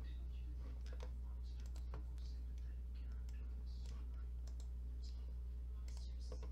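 Scattered computer mouse clicks, irregular and light, over a steady low hum.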